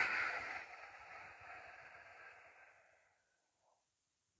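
A long ujjayi out-breath through the nose with the throat slightly constricted, making a little gravelly noise. It starts at its loudest and fades away over about three seconds.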